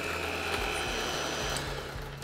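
Cuisinart electric hand mixer running at a raised speed, its beaters churning pudding mix, milk and yogurt in a glass bowl to break up lumps. The motor runs steadily, its tone shifting slightly and easing off near the end.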